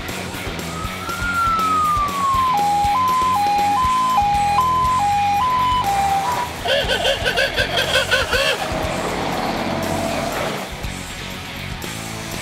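Two-tone hi-lo siren, as fitted to a converted fire engine: a short rising-then-falling sweep just under a second in, then two notes alternating steadily, about one high-low cycle a second. A fast-warbling siren follows for about two seconds, over background music.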